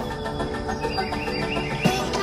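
Background music with sustained, held tones.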